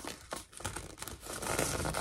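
Tissue paper crinkling and rustling as hands fold it around the edges of a kraft cardboard box, with a few small ticks, loudest near the end.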